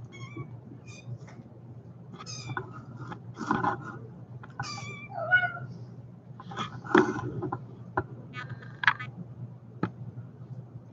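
Kittens mewing repeatedly in short, high-pitched calls, over a steady low hum.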